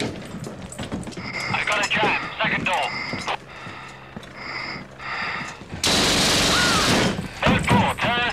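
A loud burst of automatic gunfire lasting just over a second, starting about six seconds in, from the film's SAS assault soundtrack. Before it there are muffled, indistinct voices.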